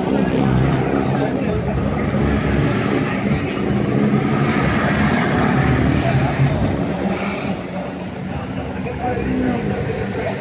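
A drag car's engine running hard through a quarter-mile pass, a steady low engine note under voices.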